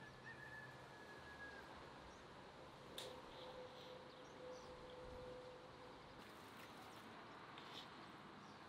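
Near silence: faint outdoor ambience, with a single faint click about three seconds in and two faint steady tones.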